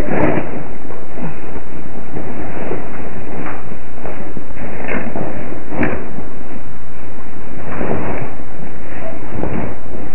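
Loud, steady hiss from a security camera's microphone, with a handful of short knocks and rustles as a person moves right against the camera: one at the start, then about six, eight and nine and a half seconds in.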